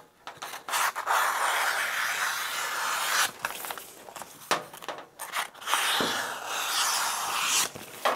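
Scissors trimming excess application tape off a sheet of vinyl lettering. There are two long, continuous cuts of about two and a half seconds and two seconds, with a softer stretch between them. The second cut starts about six seconds in.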